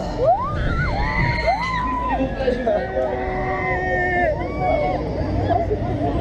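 Riders on a fairground thrill ride screaming and whooping, with several rising cries held for a second or two, over a steady low rush of wind on the microphone.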